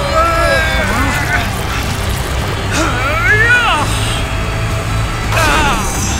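Cartoon soundtrack: several short, wordless shouts of effort from the characters, one rising sharply a few seconds in, over a steady low rumble and background music.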